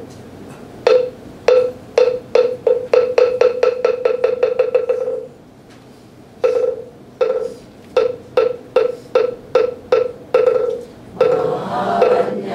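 Moktak (Buddhist wooden fish) struck in two runs. Each run starts with single, spaced strikes that speed up into a fast roll. The first roll stops about five seconds in, and after a short pause the second begins.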